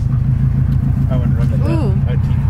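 Car engine idling, heard from inside the cabin as a steady low drone with a fine regular pulse. Quiet speech comes in about a second in.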